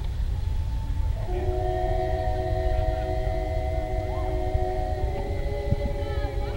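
Women's voices singing unaccompanied in close harmony: a single held note, then about a second in several voices join on a long sustained chord. A low rumble runs underneath.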